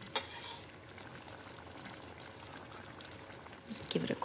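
Faint steady sizzle of pork chops simmering in a tomato and fennel sauce in a pot, with a short knock and rustle at the start.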